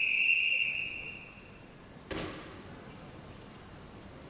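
Referee's long whistle blast in a swimming pool hall, the signal for the swimmers to step up onto the starting blocks; the single steady tone fades out under two seconds in. About two seconds in comes a short sharp sound that rings on briefly.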